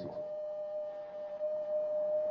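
A steady, single-pitch ringing tone held without a break, with a fainter tone just above it: feedback from a public-address microphone.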